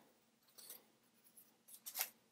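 Near silence, broken by faint, brief rustles of paper as a page of a spiral-bound planner is turned, the last one near the end.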